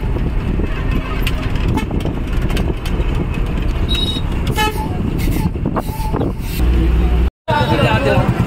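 Engine and road rumble of a moving bus heard from inside, with a short vehicle horn toot about four and a half seconds in. The sound drops out briefly near the end.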